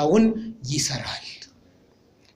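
A man speaking Amharic into a handheld microphone; his phrase ends about a second in with a breathy, hiss-like sound, followed by a short pause of near silence.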